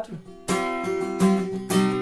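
Acoustic guitar strumming a C suspended-fourth (Csus4) chord, the chord ringing out with fresh strums about half a second in and again later.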